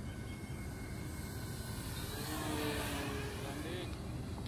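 Flightline LA-7 RC warbird's electric motor and propeller flying past: the sound swells to its loudest a little past halfway, then fades.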